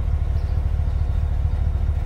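Car engine idling: a steady low rumble with a fast, even pulse.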